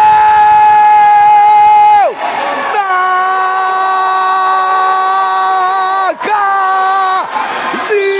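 Commentator's drawn-out goal shout, "gooool", in three long held calls, each dropping in pitch as it ends; the second lasts about three seconds and the last is short.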